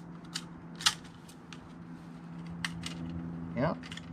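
Light plastic and metal clicks from a leaf blower's recoil starter pulley and coiled spring being turned over by hand, a handful of separate ticks with the sharpest about a second in.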